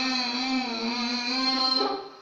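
A man's voice holding one long chanted note into a microphone, the pitch drifting only slightly, cutting off just before the end.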